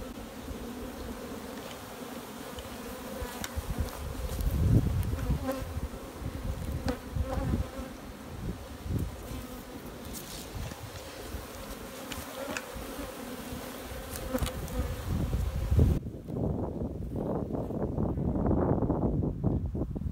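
Honeybees buzzing around an open hive in a steady hum, with low rumbles on the microphone now and then.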